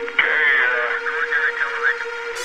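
A spoken voice sample with a thin, band-limited radio-transmission sound, starting just after the beginning, over a sustained synth pad in a breakdown of a hardcore electronic track.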